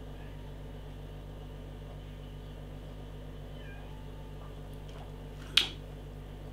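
Quiet, steady room hum, with a few faint, high, gliding sounds past the middle and one short sharp noise near the end.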